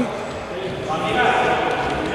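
A man's voice talking over the reverberant background of an indoor sports hall.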